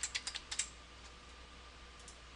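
Computer keyboard typing: a quick burst of about six keystrokes in the first second, entering a number into a text field.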